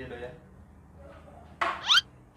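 A woman's brief, high, rising vocal cry near the end, after a quiet stretch.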